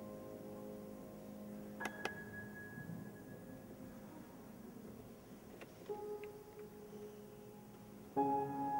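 Grand piano played very softly in a slow passage: held notes ring and slowly fade. A new note is struck about two seconds in and another near six seconds.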